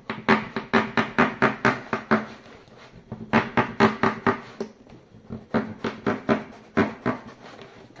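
A knife sawing through the thick wall of a plastic jug, each stroke giving a sharp crackling click, about five a second, in three runs with short pauses between.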